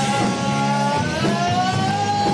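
Live rock band playing: electric guitar, bass, drum kit and keytar, with one long held high note sustained over the band.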